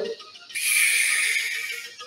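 A person breathing out hard through the mouth close to the microphone, one long hissing exhale of about a second and a half that starts about half a second in.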